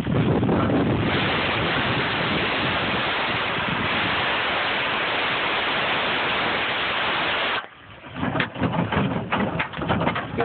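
Propane cutting torch hissing steadily as its flame cuts through rusty bumper steel. The hiss stops abruptly about three-quarters of the way through, leaving irregular knocks and rustles.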